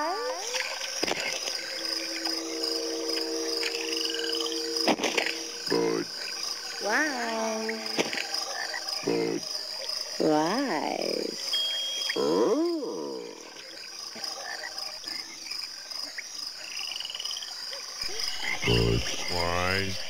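Frogs croaking: a handful of separate croaks, some sliding down in pitch, over a steady high-pitched background tone.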